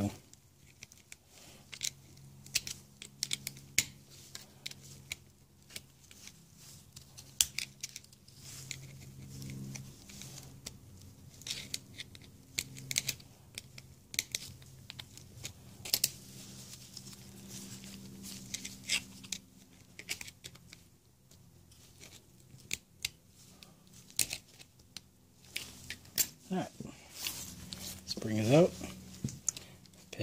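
Scattered sharp metal clicks and light scrapes of a flat-blade screwdriver working a coiled retaining spring off the clutch dog of an outboard gearcase prop shaft, unwinding it to free the pin that holds the clutch dog. A faint low hum runs underneath.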